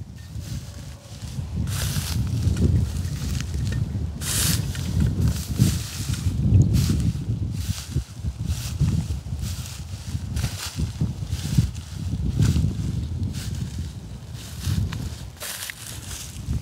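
Footsteps through dry, harvested rice straw and stubble, with several irregular rustling, crunching strokes over a low, uneven rumble.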